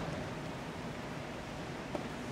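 Steady hiss of room noise in a large church hall, with a faint tap near the end.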